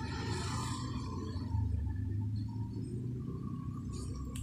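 Low, steady background hum with a few faint, thin higher tones: room noise picked up by the microphone, with no distinct event.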